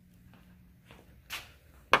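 Quiet room tone with a faint steady hum, a short rustle about a second and a half in, and a sharp click near the end.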